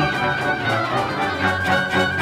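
Symphony orchestra playing, violins prominent and holding a high note, with a run of strong accented chords near the end.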